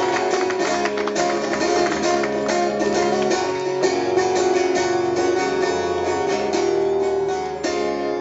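Live rock music: a steel-string acoustic guitar strummed hard and fast in an instrumental passage without singing, the chords ringing over the strokes.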